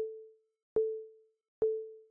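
Synth1 software synthesizer playing its Marimba preset: the same note struck again and again, each with a sharp attack and a quick fade, a little under a second apart.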